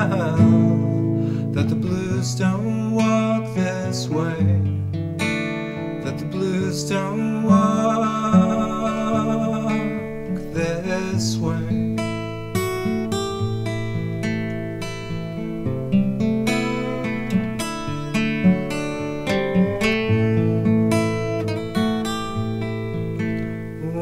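Folk song music led by acoustic guitar, strummed and picked, with long held melody notes for a few seconds in the middle.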